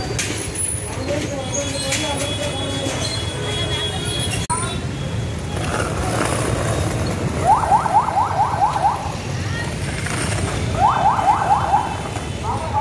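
Busy street traffic and crowd noise, with two bursts of an electronic siren in the second half, each a rapid run of rising whoops, about five a second.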